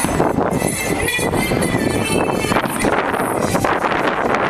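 Aerial fireworks bursting overhead, a dense run of bangs and crackles.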